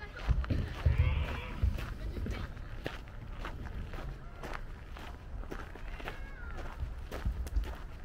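Footsteps on a gravel path at walking pace, a steady run of short steps.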